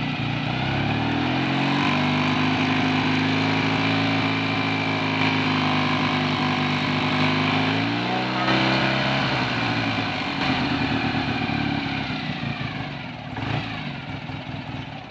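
Hot BSA A65 650 cc parallel-twin engine revved up from idle and held steady at about 3000 rpm. It is raised briefly to about 4000 rpm around eight seconds in, then let back down toward idle near the end.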